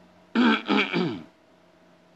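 A man clearing his throat: one harsh, rasping clearing lasting just under a second, starting about a third of a second in.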